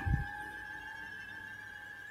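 Quiet background drone under the narration: two steady held tones, the lower one fading out about a second in while the higher one carries on.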